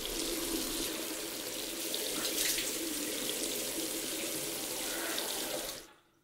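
Water running from a bathroom washbasin's single-lever mixer tap into the basin, a steady rush that begins abruptly and dies away shortly before the end as the tap is shut off, with a few small splashes as water is scooped up to the face.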